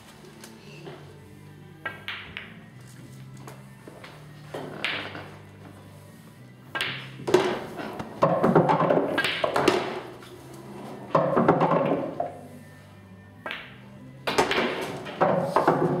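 Pool balls struck in quick succession: sharp clicks of cue ball on object ball about two and five seconds in, then three louder rattling stretches of one to three seconds as the play speeds up. Background music with a steady bass note runs underneath.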